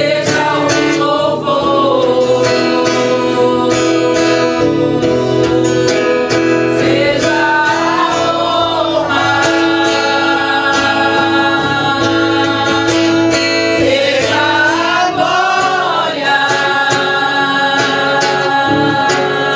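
A woman singing a hymn while strumming an acoustic guitar in a steady rhythm.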